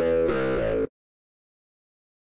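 A melodic instrumental loop playing back, its notes pitch-shifted by Melodyne's Chord Snap to fit the A minor chords; it cuts off abruptly just under a second in.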